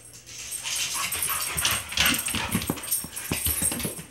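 A dog whimpering and scuffling about, with a run of quick knocks and taps from about a second and a half in.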